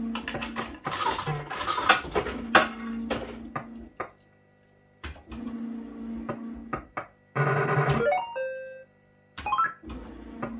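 1987 JPM Hot Pot Deluxe fruit machine being played. The reels spin twice with a motor hum and a clatter of clicks. The second spin is followed by a loud electronic jingle: a buzzy chord, a falling run of bleeps and a held tone, then a short rising run of notes near the end.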